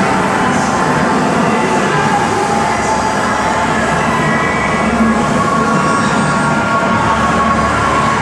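A loud, steady rumbling drone with a few faint held tones over it and a soft hiss that swells about once a second.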